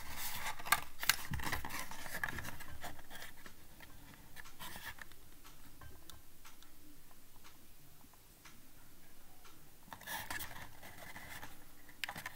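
Cardboard display box of a diecast model car handled and turned in the hands: light rubbing and scraping with two sharp clicks about a second in, quieter in the middle, and more rustling near the end.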